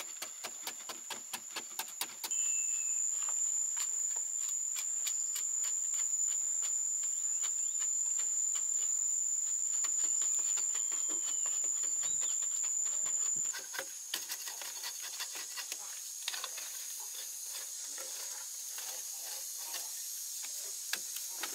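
Hand hoes chopping and scraping at hard clay soil, heard as a fast run of sharp ticks. A loud steady high-pitched insect drone comes in sharply about two seconds in and drops away about thirteen seconds in.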